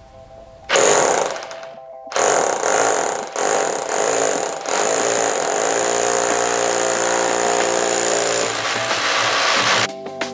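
DeWalt corded hammer drill boring down through a wooden sill plate into the concrete foundation. It starts about a second in, stops briefly, then runs steadily with a high whine until it cuts off at the end.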